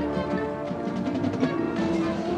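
High school marching band playing its competition field show: held brass and wind chords over drums and front-ensemble percussion strikes.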